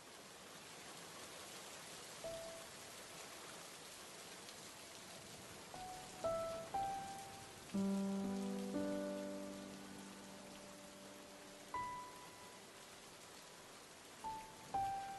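Steady rain falling, with sparse background-score notes over it: a few single struck notes, a loud low chord about eight seconds in that slowly dies away, and one more note near the end.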